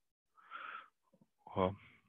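A man's short audible in-breath close to the microphone, about half a second long, followed by a few faint ticks and the start of a spoken word near the end.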